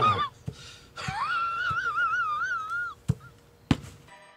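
A high, warbling vocal wail, held for about two seconds with a regular wobble in pitch. It ends with two sharp knocks, the louder one just before the end.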